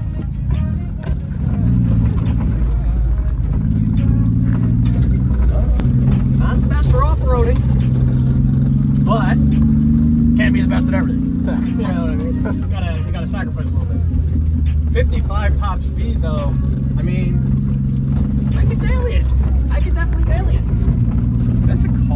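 Honda Acty mini truck's engine heard from inside the cab while driving, a low steady hum that climbs slowly in pitch and drops back several times.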